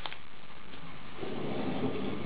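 Faint handling of a folded strip of paper under steady low room noise: a light click at the start, then a soft rustle in the second half.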